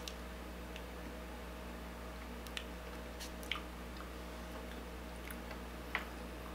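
Quiet room tone with a steady low hum, broken by a few faint, short clicks at scattered moments.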